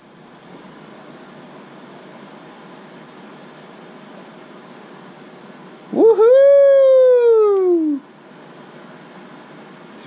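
A single long, high cry, rising and then falling over about two seconds, from the small TV/VCR combo's speaker as the VHS tape plays, over a steady low hiss.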